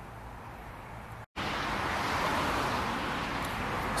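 Steady rushing traffic noise from a dual carriageway, coming in after a short break in the sound about a second in. Before the break there is a quieter road background with a low hum.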